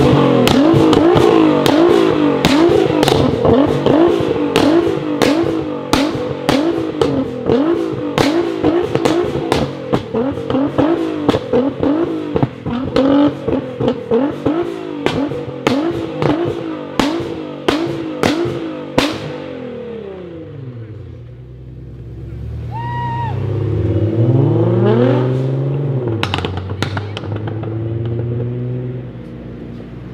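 Nissan GT-R's twin-turbo V6 with an Armytrix exhaust revved over and over, rising and falling about once a second, with many sharp exhaust pops and bangs. After about 20 seconds it drops away and another engine revs up more softly.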